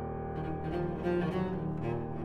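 Flute, cello and piano trio playing a fast Allegro, with the cello prominent. A held chord gives way to quick, short notes about half a second in.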